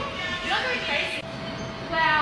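Short exclamations from a person's voice over a steady high-pitched hum.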